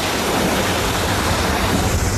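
Lake ice breaking and grinding under the bow of the Coast Guard icebreaker Mackinaw: a steady rushing noise with a low rumble underneath.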